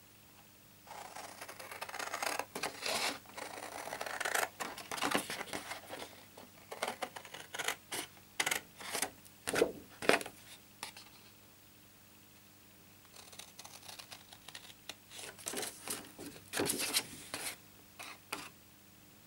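Full-size scissors cutting through cardstock: runs of snips and rasping cuts for about ten seconds, a pause of a couple of seconds, then another run of cuts near the end.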